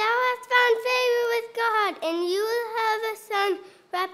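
A young child's high voice delivering lines in a drawn-out, sing-song way, close to singing, in a few phrases with short breaks between them.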